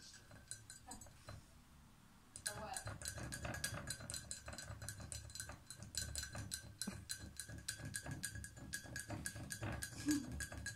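An African grey parrot's beak tapping and scraping inside an empty ceramic mug: rapid sharp clicks, several a second, starting about two seconds in.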